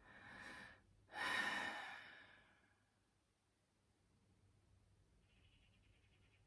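A woman breathes in, then lets out a long sigh about a second in that trails away over a second or so.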